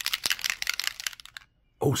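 Steel mixing balls rattling inside small bottles of lacquer model paint as they are shaken: a rapid run of clicks that stops about a second and a half in.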